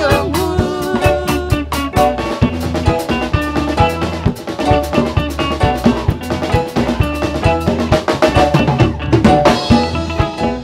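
Live reggae band playing an instrumental passage: drum kit keeping a steady, even beat over bass, electric guitars and keyboard.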